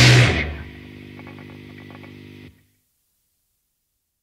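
The final loud hit of a hard rock song stops within the first half second, leaving a faint held chord, tagged as guitar, ringing on steadily for about two seconds before the track cuts off to silence.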